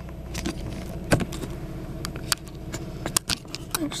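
Scattered clicks and knocks of a handheld camera being moved and set in place inside a car, heard over the car's low, steady engine hum.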